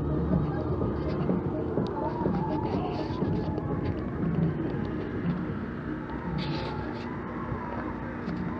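Outdoor campsite ambience: indistinct voices in the background over a steady low rumble and faint hum.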